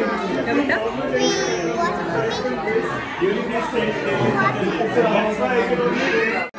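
Many people talking at once around dining tables: a steady hubbub of overlapping conversations.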